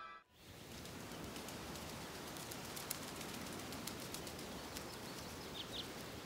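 Faint, steady outdoor nature ambience, an even hiss-like bed, with two short high bird chirps near the end.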